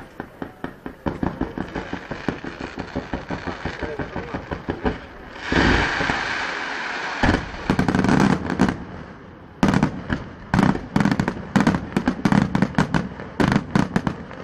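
Fireworks going off in quick succession: a rapid run of sharp pops and cracks, a loud sustained rushing hiss about five and a half seconds in, then a dense barrage of sharp bangs several a second.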